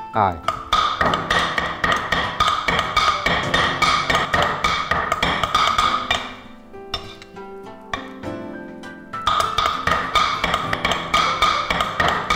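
Two cleavers chopping alternately in rapid strikes on a thick wooden chopping block, mincing shrimp into a paste. The chopping stops about halfway through and starts again a few seconds later. Background music plays throughout.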